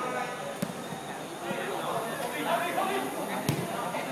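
Football kicked on artificial turf: a light thud about half a second in and a sharper one near the end, amid players and onlookers calling out.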